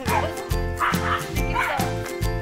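Small dogs barking in play: three short, sharp barks, over background music with a steady beat.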